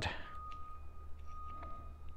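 Faint small clicks and rustles of thin wires being handled and pushed onto the terminals of a small plastic rocker switch, a few scattered ticks, over a faint steady high tone and low hum.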